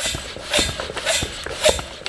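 Motive Products pressure bleeder being hand-pumped, with repeated rasping strokes of about two a second as the pump pushes air into the tank and pressure builds on its gauge.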